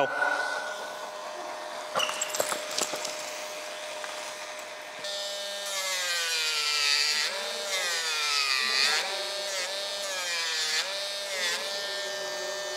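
Small electric nail grinder running on a dog's nails. It holds a steady whine, then in the second half its pitch dips and recovers again and again as it is pressed against the nails.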